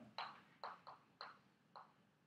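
Chalk writing on a blackboard: five short chalk strokes, each starting with a sharp click, at an uneven pace, the last just before the end.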